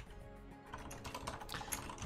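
Typing on a computer keyboard: a quick run of soft key clicks, starting about half a second in.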